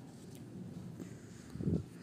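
Quiet cooking sounds of dry fish curry in a pan, with a few light ticks and a low knock near the end as a spatula starts stirring.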